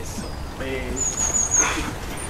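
Outdoor background with a brief voice-like call about half a second in, then a high, thin, wavering chirp lasting about half a second.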